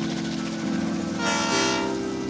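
Freight locomotive horn sounding a held chord, with a louder, brighter blast a little past the middle.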